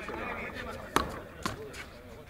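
Two light knocks of a frontenis ball about half a second apart, around a second in: the small rubber ball striking the court during a rally.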